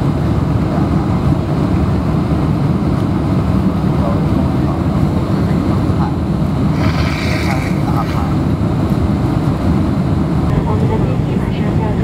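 Steady low roar of a Boeing 747's engines and rushing air, heard inside the passenger cabin during the approach with the flaps extended.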